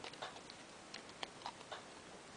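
Origami paper being folded and pressed by hand: faint, irregularly spaced small clicks and crinkles of the paper.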